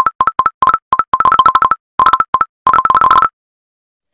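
Rapid, uneven string of about twenty short two-note message blips from a phone messaging app, each a low note followed by a higher one: messages arriving in a chat one after another. They stop a little past three seconds in.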